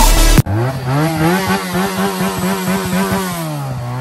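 Motorcycle engine revving. The pitch climbs quickly, holds high for a couple of seconds, drops back near the end and starts to climb again.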